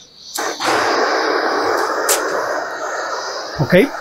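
Handheld gas torch starting up about half a second in, then burning with a steady hissing flame while heating a copper pipe joint for soldering.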